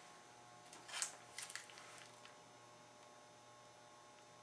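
Faint room hum, with a few short soft rustling clicks about a second in, the first the loudest, from hands handling the icing bag.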